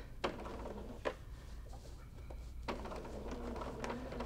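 Bernina sewing machine running slowly on a long basting stitch to gather a fabric circle: a low, steady hum with a few separate clicks.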